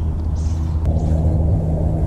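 A steady low rumble with a faint motor-like hum runs throughout. About half a second in there is a brief soft hiss as a jig is pitched out with a baitcasting rod and reel.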